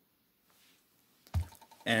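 Near silence, then about two-thirds of the way in a single short thump with a little clicking after it as a smartphone in a thick protective case is set down on the table.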